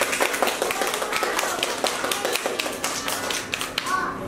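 Many irregular sharp taps and clicks, several a second, with young children's voices chattering underneath.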